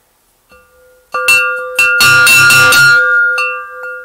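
Homemade gong cut from a steel fire extinguisher cylinder, struck several times: a few separate strikes about a second in, a rapid flurry of hits for about a second, then two lighter strikes near the end. Each strike leaves a steady ringing tone with several higher overtones sounding over it.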